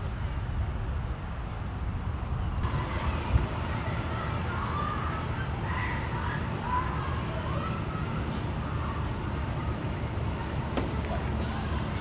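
Steady low rumble of road traffic and idling vehicles, with faint distant voices through the middle.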